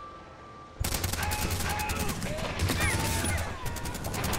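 After a short quiet moment, a sudden barrage of rapid gunfire breaks out about a second in and keeps going, many shots overlapping like a firefight.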